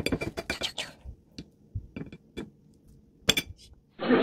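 A wooden spoon tapping and scraping on a plate: a quick run of clicks in the first second, a few scattered taps after, and one sharper knock near the end.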